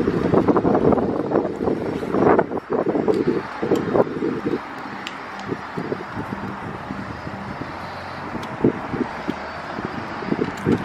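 Wind buffeting the microphone for the first four or five seconds, then easing. Scattered light clicks and taps come through as a license plate and a backup-camera bracket are handled against a pickup's rear bumper.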